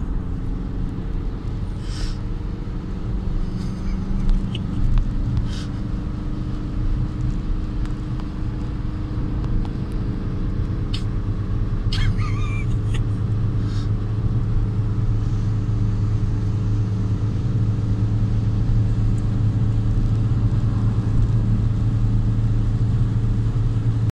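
Tuned VW Golf TDI turbodiesel engine pulling hard under load, heard from inside the cabin over tyre and road noise. Its steady drone grows louder about halfway through and then holds.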